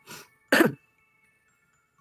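A woman clears her throat once, sharply, about half a second in, then falls quiet.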